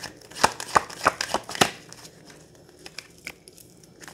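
Deck of tarot cards shuffled by hand: a quick run of crisp card snaps over the first second and a half, then only a few faint ticks.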